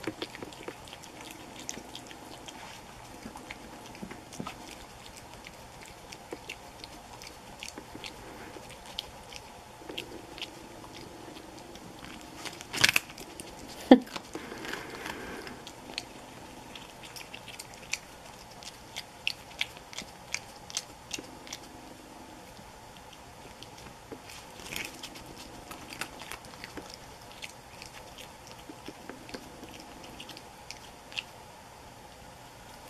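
Virginia opossum chewing and crunching a hard taco shell: many small crisp crunches and smacking bites, with the loudest crunches about halfway through.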